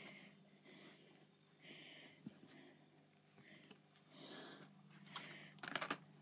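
Near silence: faint handling noise of soft rustles and clicks over a low steady hum, with a quick run of clicks near the end.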